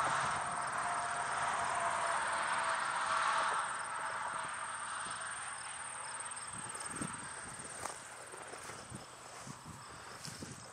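Field insects trilling with a steady high-pitched tone and a faint pulsing chirp. A rushing noise is loudest at the start and fades away over the first four seconds. A few soft knocks come in the second half.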